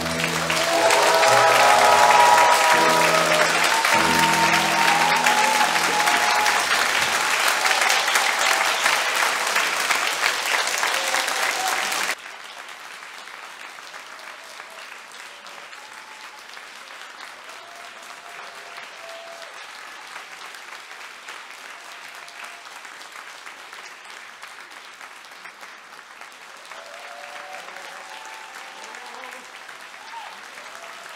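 Audience applause breaks out loudly over the piano's closing chords of the aria. About twelve seconds in, the applause drops suddenly to a much lower level and carries on steadily.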